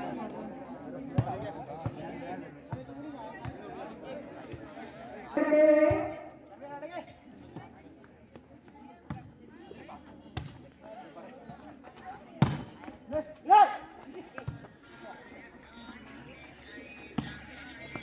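A volleyball being struck by hands during a rally, several sharp slaps, the loudest about twelve and a half seconds in, amid spectators' chatter and shouts, with a loud shout about five and a half seconds in.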